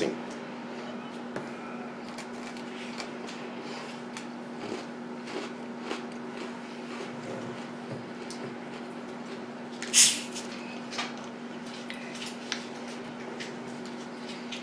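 A 2-liter plastic bottle of Mountain Dew is uncapped about ten seconds in, a short sharp hiss of escaping carbonation, followed by a couple of small clicks. Before that there are only faint ticks of quiet chewing over a steady low room hum.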